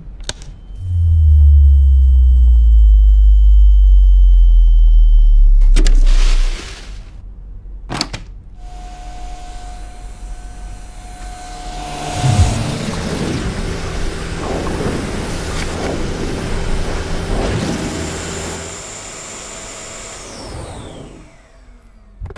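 A deep rumble lasting several seconds, followed by a few clicks. Then a Dyson Big Ball canister vacuum running on a hard floor, whose high whine glides sharply down near the end as the motor winds down.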